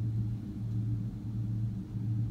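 Steady low room hum of the kind made by ventilation or electrical equipment, with no other event standing out.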